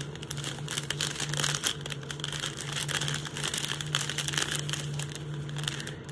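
Crinkling and crackling of a strip of small clear plastic bags of diamond painting drills being handled, with many small irregular clicks, over a steady low hum.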